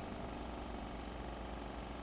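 Faint, steady engine hum from a converted GAZelle van's spraying rig running while it sprays disinfectant onto the road through a row of nozzles.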